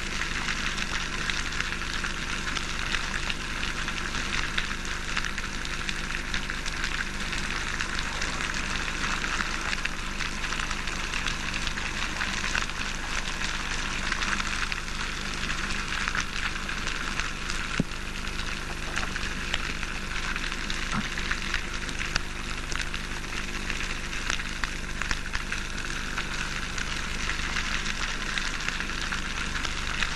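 Steady underwater crackling, a dense mass of fine clicks like frying fat, with a low steady hum beneath.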